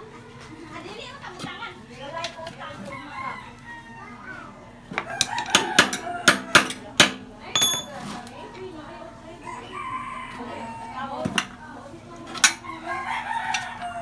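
A rooster crowing and chickens clucking in the background. A run of sharp knocks and clicks from work on the dirt-bike tyre and spoked rim comes about five to seven seconds in, the loudest sounds here, with a couple more near the end.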